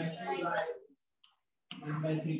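A man speaking in short, unclear bits, with two faint short clicks in the pause about a second in, made while writing on a digital whiteboard with pen input.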